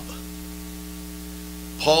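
Steady electrical mains hum with a faint hiss, a low buzz made of several steady tones. A man's voice starts a word near the end.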